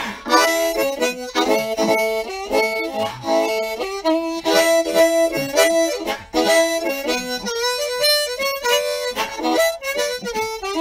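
Unamplified diatonic harmonica in A, Wilde-tuned, playing a blues line in E in second position. It runs in quick phrases of single notes and chords, with brief breaks between them.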